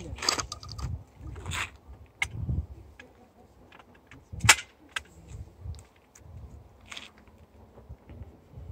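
Handling noises of a shotgun: rustling and small clicks, with one sharp, loud snap about halfway through.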